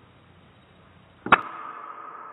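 A single sharp shot from a .25 calibre Hades air rifle about a second and a quarter in, followed by a steady ringing tone.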